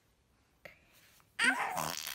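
A baby's short, noisy vocal sound, lasting under a second, in the second half after near silence: an infant's grumbling protest, which the caption reads as "no".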